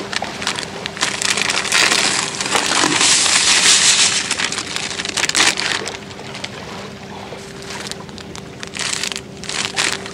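Plastic packet of dry feeder groundbait rustling and crinkling as it is handled and opened over a bucket, loudest about two to four seconds in, then quieter crackles.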